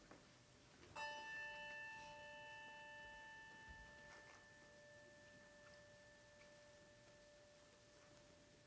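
A brass handbell rung once about a second in, its tone ringing on and slowly fading, with the higher overtones dying away first.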